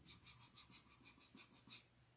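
Near silence, with faint sounds of a man drinking water from a plastic gallon jug.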